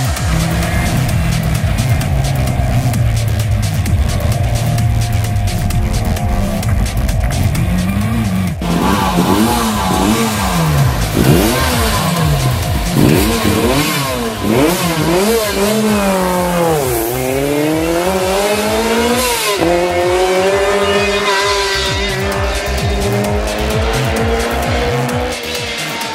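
Lancia 037 rally car's supercharged four-cylinder engine driven hard: from about a third of the way in its pitch climbs and drops again and again with gear changes and lifts, dips deeply and recovers for a corner, then holds a steadier note as it pulls away. A steadier engine sound and music come before that.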